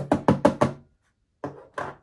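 Small loose-powder jar rapidly knocked against the hand or table, about nine hollow taps a second, tipping setting powder out into its lid. The taps stop about a second in, and two more follow near the end.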